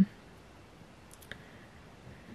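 Quiet room tone inside a truck cab, with a couple of faint clicks about a second in.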